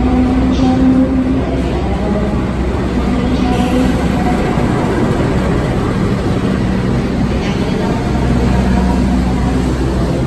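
Diesel-electric locomotive running slowly into the platform with a steady low engine drone, then its passenger carriages rolling past close by.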